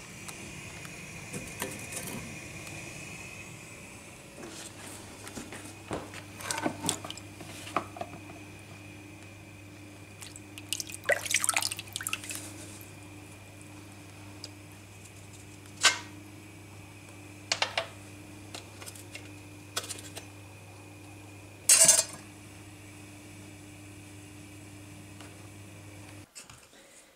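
A steel pipe-forming tool clinking and clattering against a gas hob and its pan supports several times, with the sharpest knock near the end. A steady low hum runs underneath.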